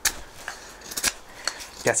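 Knife blade carving into a stick of dry, seasoned hazel wood, giving a few short sharp cracks about half a second apart as the edge bites in and shaves the wood.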